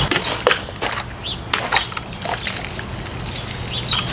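A plain-edge Cold Steel Hold Out XL folding knife slashing through a water-filled plastic bottle: a sharp cut, then a few quick knocks over the next two seconds as the severed top and its water come down.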